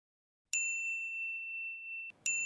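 A single bright bell-like ding sound effect that strikes suddenly about half a second in and rings on as one clear tone, its higher overtones fading first.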